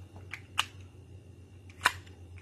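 Two sharp mechanical clicks about a second and a quarter apart, the second louder: handling of the Hi-Point C9 9mm pistol and its magazine while loading one more round.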